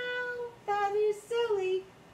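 A woman's voice singing three wordless held notes, the second a little lower than the first and the last sliding down in pitch.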